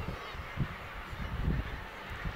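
Seabird colony calls heard at a distance, over an uneven low rumble of wind on the microphone.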